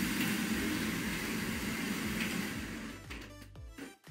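Kitchen range hood exhaust fan running with a steady whir, then switched off and winding down, fading out over the last second or so.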